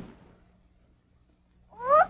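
A short knock as the cartoon park ranger falls, then a faint steady hum. Near the end a cartoon character's brief voiced cry rises in pitch.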